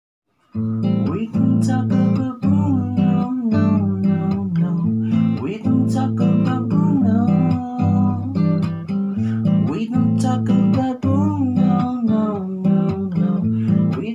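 Acoustic guitar with a capo, played by hand in a steady rhythm of chords, starting about half a second in.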